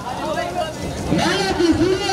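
Speech only: a person talking, louder from about a second in.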